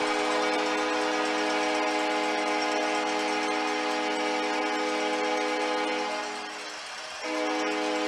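Hockey arena goal horn sounding one long multi-tone blast over crowd noise after a home-team goal; it fades about six seconds in and sounds again near the end.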